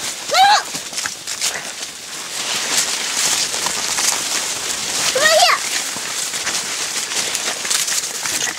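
Dry corn leaves and stalks rustling and crackling as they brush past, with footsteps on dry leaf litter. A child's voice gives two brief calls, about half a second in and about five seconds in.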